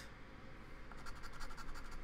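A hand-held scratcher tool scraping across a scratch-off lottery ticket in quick, faint, evenly repeated strokes, mostly in the second half.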